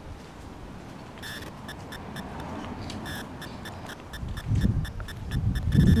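A rapid, regular high-pitched ticking, about three to four ticks a second, starting a little over a second in. A low rumble of handling or wind noise builds under it in the last two seconds.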